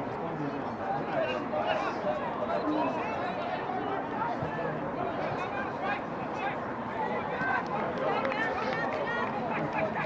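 Overlapping voices of several people calling out and chattering at a distance, a steady babble with no clear words.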